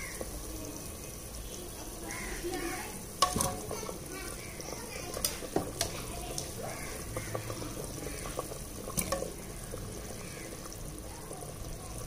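Mutton curry gravy with potatoes boiling and bubbling in an open aluminium pressure cooker. Steady bubbling, broken by a few sharp clicks.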